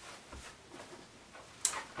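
Quiet room tone with a short, sharp breath near the end.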